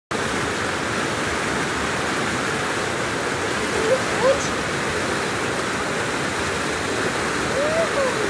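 Fast whitewater rushing and churning at the foot of a concrete wall: a steady, even rush of water.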